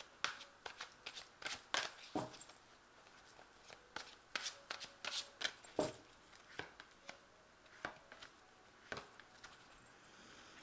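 A tarot deck being shuffled by hand, with cards drawn and laid down on a cloth-covered table: faint, irregular card flicks and taps with a short pause partway through.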